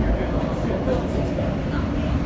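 New York City subway train running along elevated track: steady rumble of wheels on rails heard from inside the car.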